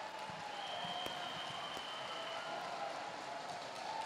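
Audience applauding, fainter than the speech on either side, with a few voices from the crowd under the clapping.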